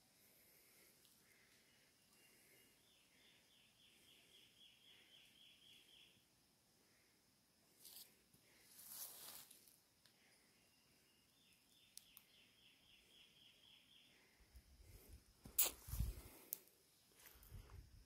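A small bird singing a faint run of about a dozen short high notes, about four a second, twice a few seconds apart. Knocks and rustles come near the end.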